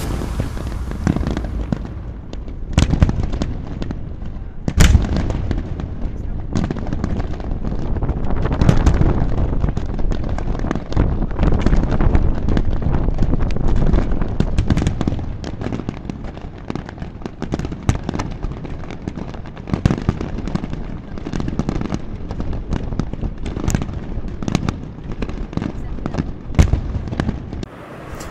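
Fireworks display: a continuous barrage of bangs and crackling from many shells bursting at once, with the loudest bangs about three and five seconds in and a few more near the end.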